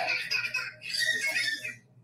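A high-pitched, wavering voice in two short stretches, breaking off just before the end.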